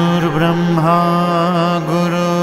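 A male voice chants a Sanskrit invocation to the guru in long, sustained notes with slight wavers in pitch, over a soft instrumental backing.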